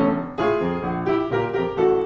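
Upright acoustic piano played solo: four chords struck within two seconds, each ringing on as it fades into the next.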